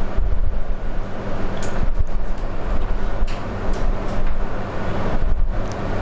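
Steady low rumble and hiss with a hum of a few even tones, like wind or moving air on a clip-on microphone.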